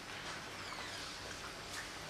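Faint, steady room tone of a lecture hall during a pause in speech: a low even hiss with no distinct events.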